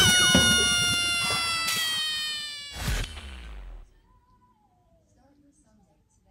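Edited-in comedy sound effect: a sharp hit and one long held, buzzy tone that slides slowly down in pitch, then a second hit about three seconds in that dies away within a second.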